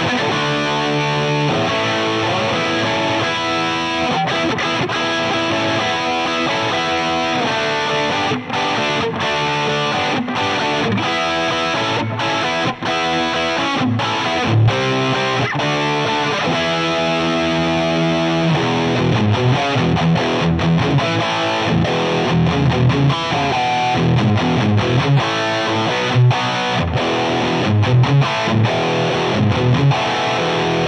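Music Man Luke III electric guitar played through a Line 6 POD Go rock preset (compressor, Timmy overdrive, amp and cab simulation, reverb). Distorted chords ring out, changing every second or two, then the playing turns to choppier rhythmic riffing from about 18 seconds in. The drive is on the heavy side: the player would turn the overdrive down a little for a more rock tone.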